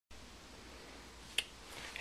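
A single sharp click about a second and a half in, over faint room hiss.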